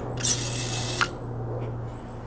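Propane hissing through the conversion kit's regulator as its priming button is held down for about a second, priming the line to the generator's carburetor, ending in a sharp click when the button is released. A steady low hum runs underneath.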